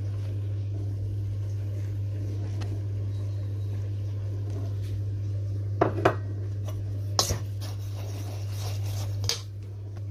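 A few sharp clinks of a metal utensil against a stainless steel mixing bowl, a pair about six seconds in and another about seven seconds in, over a steady low hum.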